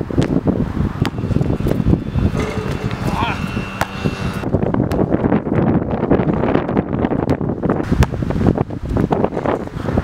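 Wind rumbling on a camera's built-in microphone, broken by a few sharp knocks from a basketball bouncing on an outdoor court and hitting the rim during a dunk.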